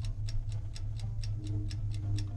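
Rapid clock-ticking sound effect of a countdown timer, about five even ticks a second, over a low steady hum.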